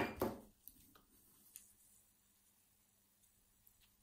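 A sharp knock right at the start, then a few faint clicks of a brass padlock and a hand-made pick being handled as the pick goes into the keyway; mostly near silence after that.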